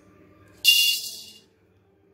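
Black peppercorns poured from a scoop into a steel pan: a bright rattling clatter lasting under a second, with a light ring from the pan.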